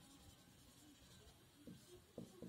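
Near silence, with the faint rub of a felt-tip marker drawing a line on a whiteboard, a little louder near the end.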